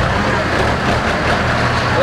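A motor vehicle's engine running close by, a steady low hum over general street noise.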